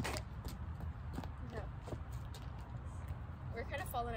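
Rubber lacrosse balls being caught and thrown with lacrosse sticks, giving a scatter of short, sharp knocks and clicks over a low, steady rumble.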